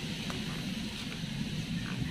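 Steady low background rumble with a few faint ticks.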